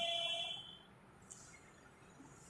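A faint steady tone of a few pitches fades out within about half a second, leaving near silence.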